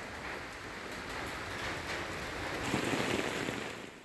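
Rain falling steadily on wet paving, a continuous hiss of water on hard ground, slightly louder about three seconds in.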